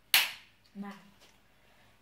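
A single sharp clack of a hard object striking, loudest right at the start and fading within about half a second. A brief vocal sound follows a little under a second in.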